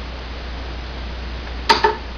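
Steady low hum with faint hiss, and near the end a single sharp click with a brief ring, as small pliers work fine wire wound around a drill bit.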